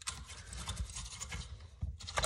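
A dry chip brush scrubbing quickly back and forth over a flat-black painted prop control panel, its bristles scratching across the raised parts and wires as it is dry-brushed.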